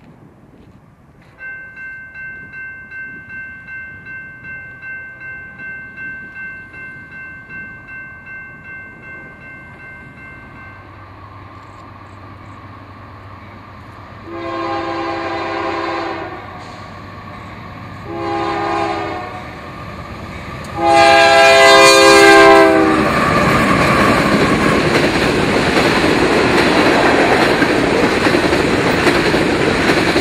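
A grade-crossing warning bell dings about twice a second for the first ten seconds as a freight train led by two Union Pacific AC4400CW diesel locomotives approaches. The locomotive air horn then sounds three blasts (long, short, long), the last the loudest and dipping slightly in pitch at its end. The locomotives and freight cars then roll past loudly with clattering wheels.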